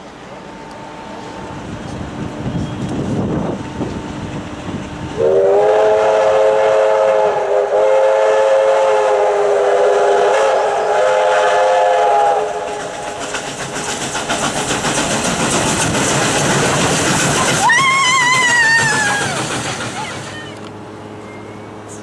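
Victorian Railways K class steam locomotives working a train past at close range: a long steam whistle blast of several notes held for about seven seconds, then steady rapid exhaust chuffs and wheel clatter as the engines go by. A short high cry of a voice near the end.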